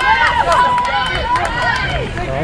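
Spectators shouting encouragement in overlapping voices as cross country runners pass close by, one call held for about half a second near the middle.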